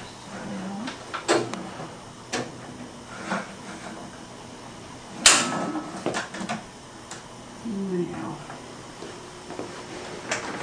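Clicks and knocks from X-ray room equipment being handled, several separate ones with the sharpest and loudest about five seconds in.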